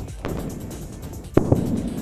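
Sonic boom from a jet flying supersonic: a sharp double bang a little under one and a half seconds in, after a fainter crack near the start, over background music.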